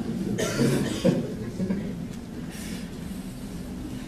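Audience in a hall murmuring as laughter dies away, with a loud cough about half a second in and a fainter one later.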